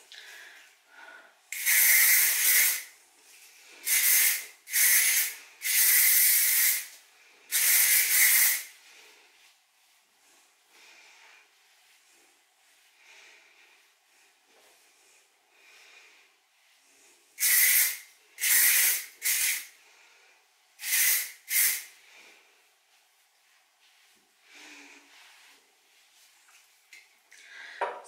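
Small aerosol can of L'Oréal Elnett hairspray spraying onto hair in short hissing bursts: about five in the first few seconds, then after a pause about five shorter, quicker ones. Between the two groups, hands scrunching damp hair make a faint rustle.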